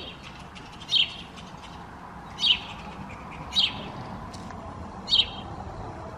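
A bird chirping: a short, high, loud call repeated about every second or so, five times, over a low steady background hum.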